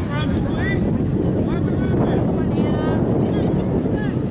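Wind buffeting the camera microphone in a steady rumble, with distant shouted calls from the field over it, one held call near the end.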